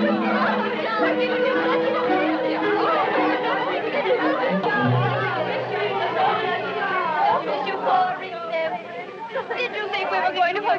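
Many young women's voices chattering, calling and laughing excitedly all at once, over film-score music with sustained notes and a low held note from about halfway through.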